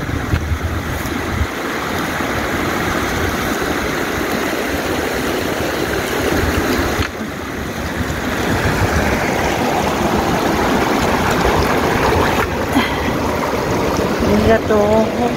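Shallow river water running over stones: a steady rush that dips briefly about halfway through.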